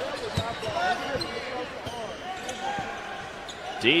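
A basketball being dribbled on a hardwood court, with irregular thumps, under a murmur of crowd and player voices in the arena.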